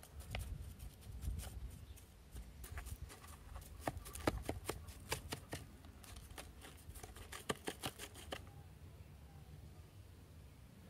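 A wooden stick digging and scraping through coarse building sand in a plastic basin: a quick, irregular run of gritty scratches and small clicks that stops shortly before the end.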